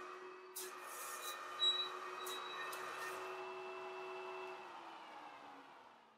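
Wire-winding machinery running: a faint steady machine whir with a few sharp clicks early on, its pitch dropping as it fades out near the end.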